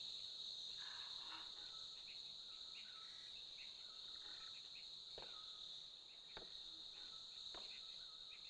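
Jungle insect ambience: a steady high-pitched insect drone with short, repeated chirps over it, fairly quiet. Three faint clicks about a second apart come in the second half.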